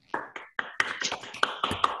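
Several people clapping in applause over a video call, each through their own microphone. The claps are sparse at first and grow dense after about half a second.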